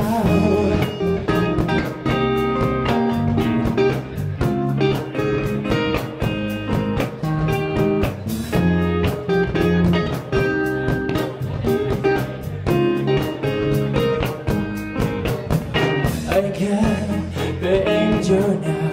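Rock band playing live: electric guitar, bass guitar and drums together, with a steady drum beat under sustained guitar chords.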